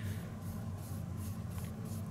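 Paintbrush bristles scratching and dabbing dry pigment powder onto a textured model cobblestone road, a run of quick faint strokes.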